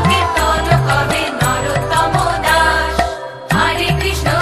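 Bengali Krishna kirtan sung by a group of women in a chant-like melody over bass and percussion. The music breaks off briefly about three seconds in, then comes back.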